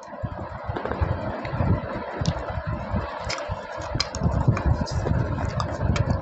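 Slate pencil being bitten and chewed close to the microphone: a dense, irregular run of gritty crunches and small clicks.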